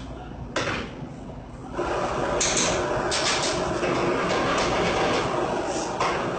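A hot pan on a gas range sizzling: the sizzle starts suddenly about two seconds in and holds steady, with a few knocks of metal pan and utensils.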